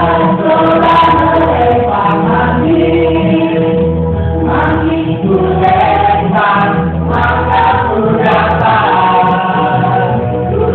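A group of voices singing together, choir-style, over musical accompaniment with a steady low bass.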